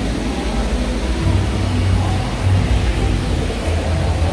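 Low, steady rumbling background noise that swells a little now and then.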